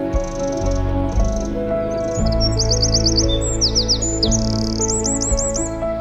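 A songbird singing high notes: a couple of short calls, then from about two seconds in quick runs of repeated looping notes, over soft sustained background music.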